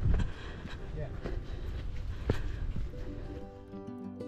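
Wind rumbling on the microphone outdoors, with a few sharp knocks. Near the end, background music with plucked notes comes in.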